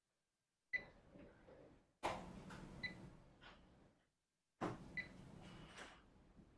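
Faint knocks and clicks of equipment being handled at a desk, in three separate bursts that start suddenly and die away, each with a brief high ping.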